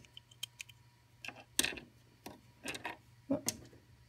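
Small plastic dollhouse accessories being set down on a toy bathroom sink: a string of light, separate clicks and taps. Near the end there is a brief clatter as the tiny toy perfume bottle slips.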